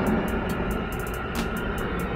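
Gas burner of a ceramic kiln running with a steady roar and scattered faint crackles, easing slightly as its air intake is closed down. This shifts the flame from an oxidizing burn toward reduction.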